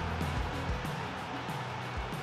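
Background music under the highlights, carried by steady low bass tones.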